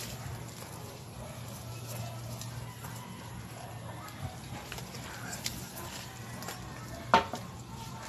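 Loose pieces of concrete rubble and stone knocking together as plants are worked out from among them. A few scattered knocks, the loudest a sharp one about seven seconds in, over a low steady hum.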